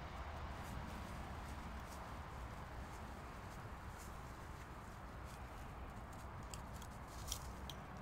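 Faint rustling and crunching of dry fallen leaves under the paws of two Tamaskan dogs running and playing, with a cluster of crisp rustles near the end, over a steady low background noise.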